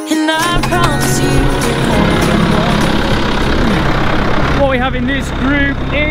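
Tractor engine idling with a steady low drone, which comes in just after the start as background music cuts off. Voices sound over it near the start and again in the last second or so.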